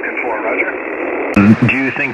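Speech only: a man's voice received over single-sideband shortwave radio, thin and band-limited. About a second and a half in, a fuller, clearer voice close to the microphone cuts in.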